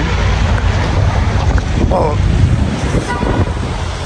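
Wind buffeting the phone's microphone over street traffic noise, with a brief voice fragment about two seconds in.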